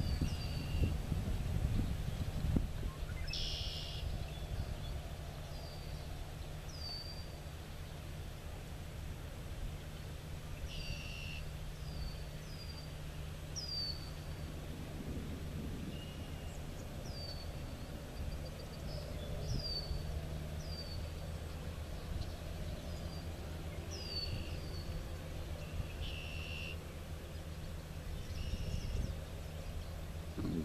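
A bird's short, high, down-slurred chirps, repeated irregularly, with a few brief raspier calls mixed in, over a steady low background rumble.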